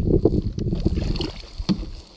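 Small waves lapping and slapping against the plastic hull of a kayak, dying down a little past halfway, with a single sharp knock near the end.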